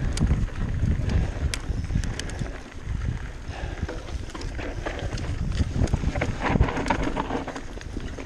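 Mountain bike descending rough dirt singletrack: tyres rumbling over dirt and stones, with frequent clicks and rattles from the bike, and wind buffeting the camera microphone.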